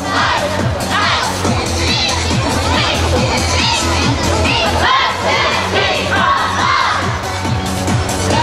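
Many high voices shouting and cheering together, yosakoi dancers' calls, over loud dance music with a heavy bass.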